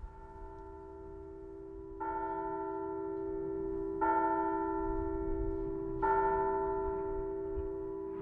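Soft bell-like chime music: a sustained ringing chord, with a new strike every two seconds that adds higher tones, each ringing on and fading slowly.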